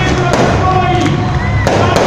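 Stage pyrotechnic fountain firing with a dense crackle of sparks, mixed with loud voices and music.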